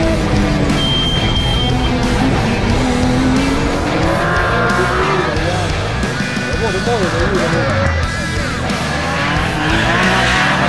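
BMW E46 M3 rally car's S54 straight-six engine revving hard at stage speed, its pitch rising and falling with the gear changes. Background music plays over it.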